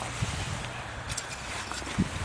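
Wind buffeting the microphone over a steady low rumble, with a couple of faint knocks.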